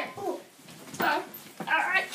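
Three short wordless vocal sounds, each bending in pitch, with quiet gaps between.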